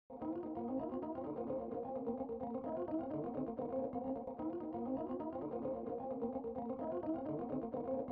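Instrumental intro of a hip-hop beat: a quiet, thin melodic line of quick repeating notes with the bass cut away.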